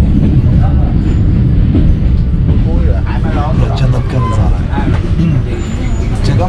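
Overnight passenger train running, a loud steady low rumble heard inside the carriage, with voices talking over it from about three seconds in.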